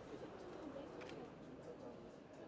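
A pigeon cooing, low and soft, over a faint murmur of voices, with a short click about a second in.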